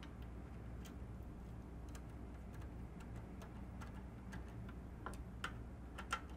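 Faint, irregular clicks, about two a second, from a Torx screwdriver driving a screw into a telemark binding's new plastic claw as the screw cuts its own threads. A low steady hum lies underneath.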